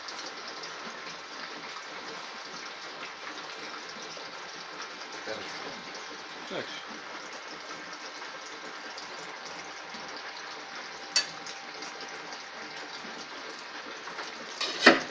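Steady rushing hiss of water flowing through a home-made beeswax foundation mould, whose pump circulates iced water across its two plates to cool the wax. A single sharp click sounds about 11 seconds in.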